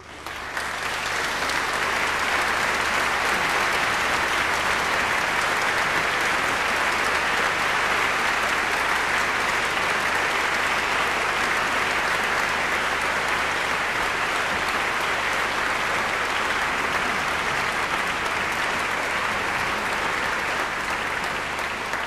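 Large concert-hall audience applauding, swelling within the first second and then holding a steady, dense clapping.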